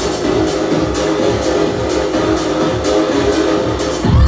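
Loud tech house music playing over a club sound system with a steady beat.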